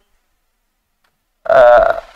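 Near silence for about a second and a half, then a person's voice making a short held vowel sound, like a hesitant 'aah', for about half a second.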